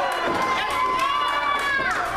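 A spectator's high-pitched voice holding one long shout that drops away near the end, over the murmur of a small crowd, with scattered sharp knocks.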